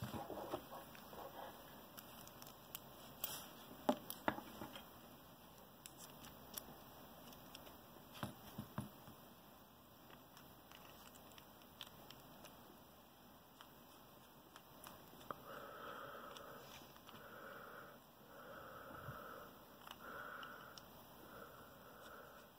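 Faint small clicks and taps of a brass padlock and a precision screwdriver being handled and fitted together, scattered through the first half. Near the end a soft sound repeats about once a second.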